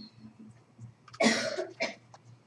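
A man coughing: one loud cough a little over a second in, then a shorter one.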